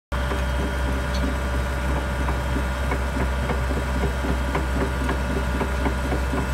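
Komatsu PC100-5 excavator's diesel engine running steadily at idle, a constant low rumble.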